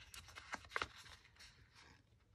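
Faint small clicks and scratches of fingernails picking at the edge of a vellum sticker on its paper backing sheet, trying to lift it, with a few ticks in the first second.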